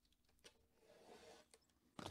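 Near silence: room tone with two faint clicks.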